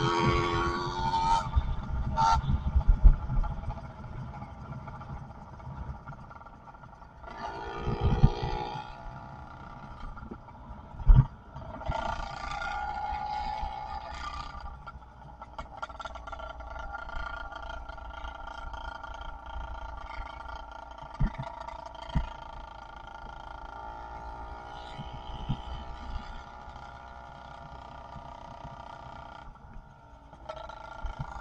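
110cc two-stroke motorized-bicycle engine running under way, its pitch rising and falling as the rider speeds up and eases off. Wind rumbles over the microphone in the first few seconds and again around eight seconds in, and a few sharp thumps come through, the loudest about eleven seconds in.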